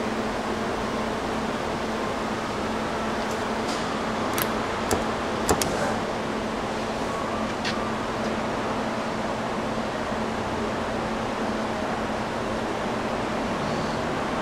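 Steady hum of an Amera Seiki MC-1624 CNC vertical machining center powered up before homing, with a few short sharp clicks between about three and eight seconds in.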